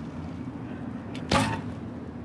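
Recurve bow shot: the bowstring is released with one sharp snap just over a second in, dying away within a few tenths of a second, over a steady low hum.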